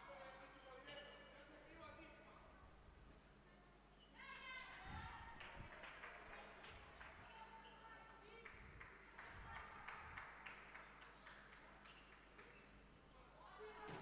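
Faint sounds from a handball court: distant players' voices calling out, strongest from about four seconds in, with scattered ball bounces on the floor.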